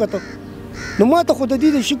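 A man speaking, with a pause of about a second at the start in which two short, faint bird calls sound before his voice resumes.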